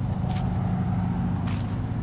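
A steady low machine hum, with a few brief faint clicks over it.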